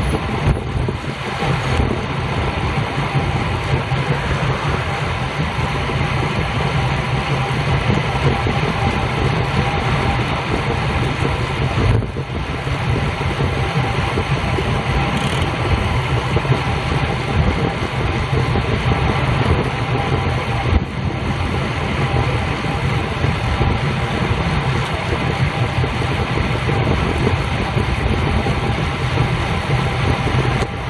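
Steady wind rush and road noise on a bicycle-mounted camera's microphone while riding in a road cycling group at about 25 mph, with a heavy low rumble. It dips briefly twice.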